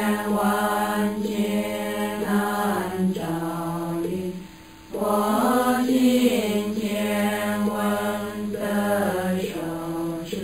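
Background music: a slow sung chant, the voice holding long notes in phrases of about four seconds, with a brief break about four seconds in.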